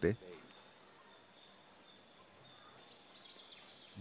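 Near silence: faint steady background hiss of an outdoor setting, with a few faint high bird chirps about three seconds in.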